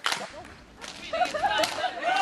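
A sharp smack right at the start, then people's voices from about a second in.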